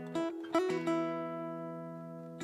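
Acoustic guitar playing slow, calm instrumental music: a few plucked notes in the first second, then the notes left ringing and slowly fading.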